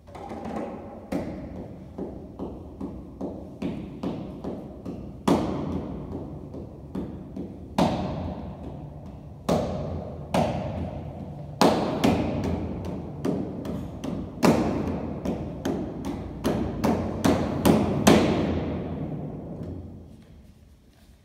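Grand piano played with hard, sharply struck chords and low notes, each left ringing into the next. The strikes come irregularly and crowd together in the last few seconds before the playing stops.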